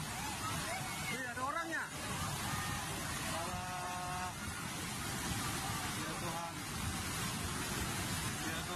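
Swollen flash-flood river rushing past, a loud, steady noise of muddy water throughout. People's voices come over it in the first couple of seconds, and about three and a half seconds in a steady pitched tone sounds for about a second.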